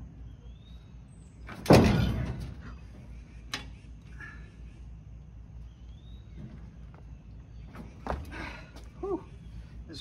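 A socket and bar on a seized lug nut of a 1980 Ford F100's wheel being forced with body weight: one loud metallic clang about two seconds in that rings briefly, then a few smaller knocks of the tool against the wheel. The nut is stuck fast and does not break loose.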